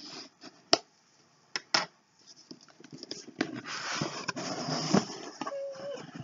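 A cardboard box being handled and opened by hand. A few sharp clicks and taps come in the first two seconds, then a few seconds of cardboard scraping and rustling as the flaps are pulled open.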